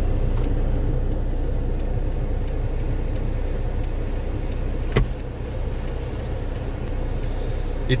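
Steady low rumble of a car driving, engine and road noise heard inside the cabin, with one sharp click about five seconds in.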